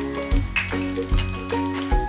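Cashew nuts deep-frying in hot oil in a pan, sizzling and bubbling with small pops as a spatula stirs them. Background music with a steady beat plays over it.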